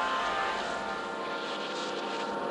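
Psytrance breakdown with no kick or bass: a sustained, droning synth pad holding several steady tones, with a hissing noise sweep swelling over it in the middle.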